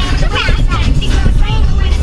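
A girl singing loudly in long held, bending notes over the steady low rumble of a moving car.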